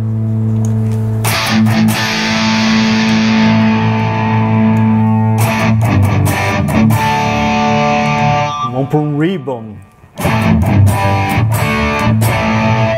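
Distorted electric guitar through a Fractal Audio Axe-Fx III, running a Revv Generator Purple channel amp model into a DynaCab Citrus 4x12 cabinet model. He lets chords ring, strikes new ones about a second and five seconds in, and plays bent notes with vibrato near nine seconds, followed by a brief drop and more playing.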